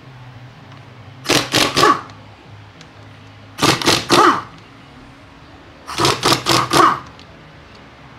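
Impact wrench run in three short bursts, each a quick string of hammering pulses, as it works bolts loose on a differential (final-drive) housing.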